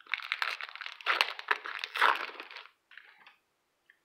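Plastic wrapper of a hockey card pack crinkling and crackling as it is torn open and pulled off the cards, for about two and a half seconds, with a brief faint rustle after.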